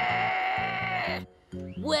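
A boy's voice making an angry, drawn-out growl through clenched teeth, held for about a second and a half and then cut off suddenly, over background music with a pulsing low bass.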